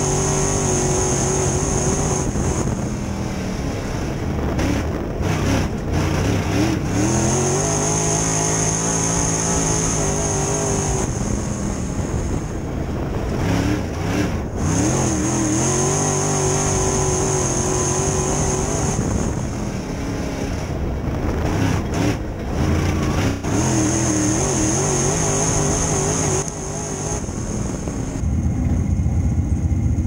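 Crate late model's V8 racing engine heard from inside the cockpit, going to full throttle down the straights and lifting off into the turns, rising and falling about every eight seconds. Near the end it drops to a low rumble as the car slows off the track.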